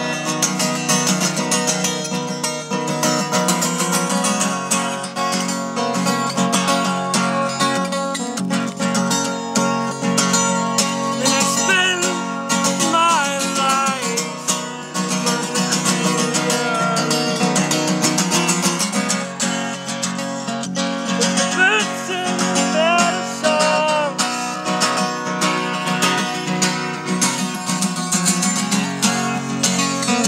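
Acoustic guitar strummed fast and steadily, chords ringing without a break.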